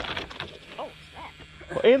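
Rear hatch lid of a 1983 AMC Eagle SX/4 being lifted open by hand. There is a sharp knock right at the start, then a few faint short squeaks as it rises on its support struts.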